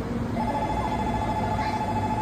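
Electronic platform departure bell ringing steadily from about a third of a second in, signalling that the Shinkansen is about to depart.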